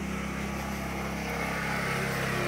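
Gasoline-powered generator engine running at a steady speed, giving a constant low drone.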